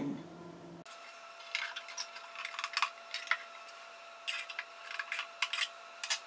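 Irregular small clicks and light scrapes of a metal sound post setter and a new wooden sound post being worked into a violin through the f-hole, coming in two clusters.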